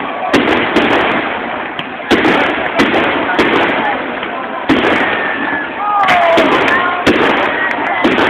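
Aerial fireworks shells bursting, about eight sharp bangs spaced roughly a second apart, over steady crowd voices.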